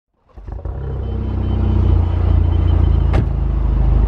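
Alfa Romeo Giulia's 2.0-litre turbo four-cylinder running, heard close at the exhaust tip as a steady low rumble that builds in the first couple of seconds, with one short sharp sound about three seconds in.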